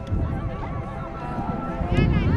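Players' voices shouting on a rugby pitch, with one drawn-out high call held for about a second in the middle, over a low rumble.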